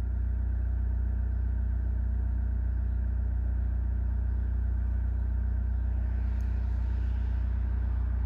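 A steady low mechanical hum that holds an even pitch and level throughout.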